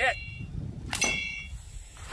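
About one second in, a slung golf ball strikes an empty steel propane tank with a sharp clang, and the tank rings with a bell-like tone for about half a second.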